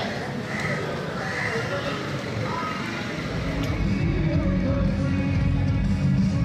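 Busy street ambience with voices and a few short high-pitched calls. Background music with a steady low beat fades in about halfway through and takes over.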